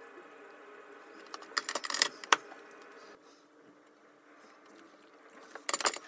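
Soldering tools being handled at a metal helping-hands stand: short clusters of light clicks and rattles, about a second and a half in and again near the end, over a faint steady hum.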